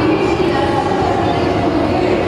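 Loud, steady din of a crowded exhibition hall: many voices mixed into a continuous rumbling background noise.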